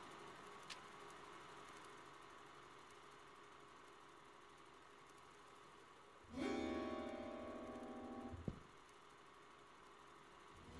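Faint room hiss with a soft tick near the start, then about six seconds in a sustained keyboard chord sounds, fades a little, and is cut off abruptly with a click about two seconds later.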